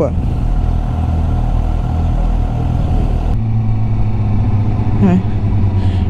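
Motorcycle engine idling with a steady low note while stopped in traffic. After an abrupt cut a little past three seconds in, a motorcycle engine runs steadily under way at road speed.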